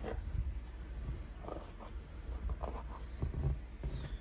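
SlimyGloop slime being squeezed and pressed between fingers, giving short, scattered squelching crackles over a low rumble of handling.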